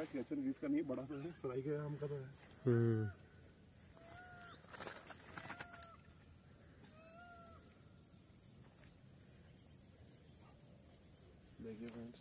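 Insects chirring steadily with a rapid pulse, about three a second, over a riverbank background. A voice in the first three seconds, three short rising-and-falling bird calls between about four and seven seconds in, and a few sharp clicks about five seconds in.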